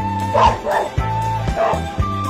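A small dog barking, about three short yaps, over background music with a steady beat.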